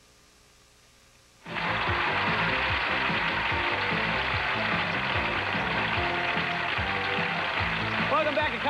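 After a second and a half of near silence, a studio audience starts applauding suddenly over the game show's music, and both hold steady at a constant level.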